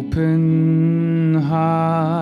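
A singer holding one long, steady sung note that dips and wavers into vibrato near the end, over sustained electric guitar and keyboard backing.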